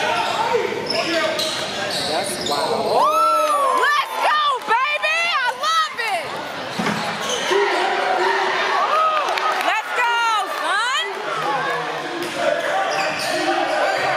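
Basketball game on a hardwood court: sneakers squeaking in two spells of sharp, bending squeals, about three seconds in and again about nine seconds in, with a ball bouncing and voices echoing around the gym.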